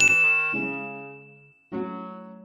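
A bell-like ding sound effect strikes once and rings out, fading over about a second and a half. A second, softer chime-like tone enters near the end and also fades away.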